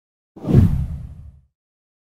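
A single deep whoosh sound effect for an on-screen transition: it swells in about a third of a second in, peaks quickly and fades away by about a second and a half.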